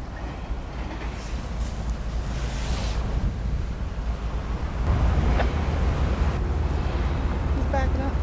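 CSX diesel freight locomotives approaching, their engines a low rumble that grows louder about five seconds in, with wind buffeting the microphone.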